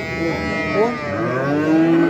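Cattle mooing: a long drawn-out moo that rises and falls, then a second long moo starting a little after a second in.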